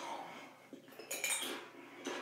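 Someone biting and chewing crunchy tortilla chips: a few irregular, crisp crackling bursts, the loudest a little past a second in.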